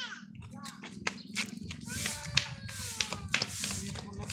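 Kitchen knife clicking and scraping against long green moringa pods as they are split and cut by hand, a run of short sharp ticks. Faint voices in the background.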